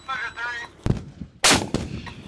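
A short sharp crack just under a second in, then the much louder blast of an M777A2 155 mm towed howitzer firing about a second and a half in, with a brief ringing tail.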